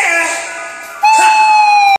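Close of a karaoke duet: a shouted 'yeah' falls away in pitch. About a second in, a loud, steady high held note starts and is cut off abruptly at the end.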